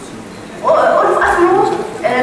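Only speech: a woman's voice starts about half a second in, after a short pause.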